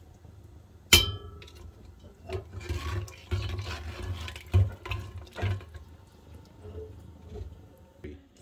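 A metal spoon clangs once against an aluminium cooking pot about a second in, ringing briefly, then stirs through the liquid curry with scraping, sloshing strokes as whole spices are mixed into the mutton korma.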